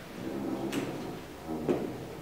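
Two short, soft knocks about a second apart, the second louder, over a faint low voice murmur.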